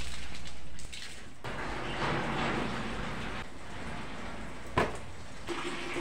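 Water poured from a plastic basin over wet doormats in a plastic laundry basket: a heavy pour for the first second, then a quieter trickle and drip as it drains through. A single knock near the end.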